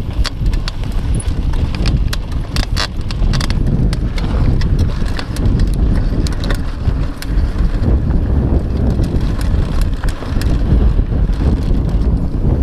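Mountain bike rolling fast down a dry dirt trail: a steady low rumble of wind and tyres on dirt, with frequent irregular clacks and rattles from the bike jolting over bumps.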